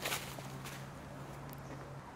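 Footsteps on dry leaf litter, a person walking away: the loudest step at the very start, then a few fainter ones. A steady low hum runs underneath.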